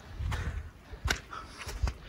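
A few soft thumps, about half a second, a second and near two seconds in, over a low rumble on a handheld phone microphone: footsteps of a hiker walking over wet grass and patchy snow.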